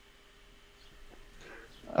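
A pause in a voice call: faint room noise with a thin steady hum. Near the end a soft breath-like rustle rises into the start of the next spoken word.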